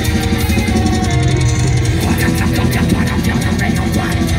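Symphonic black metal band playing live, loud: distorted electric guitar, keyboards and fast, even drumming. A harsh voice comes in over the band about halfway through.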